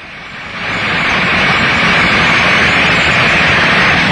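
Tank running over rough ground: a loud, steady engine-and-track noise that builds over the first second and then holds.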